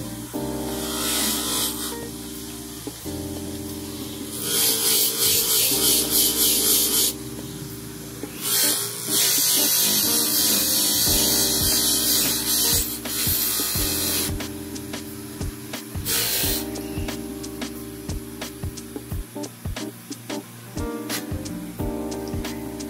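Bench grinder motor running with a steady hum, while a steel cuticle nipper is pressed against its spinning sisal polishing wheel in several bursts of loud hiss, the longest lasting about five seconds in the middle. Light clicks of the nipper being handled follow near the end.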